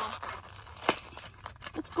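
Plastic and paper toy packaging crinkling and rustling as it is handled and pulled open, with one sharp click a little under a second in.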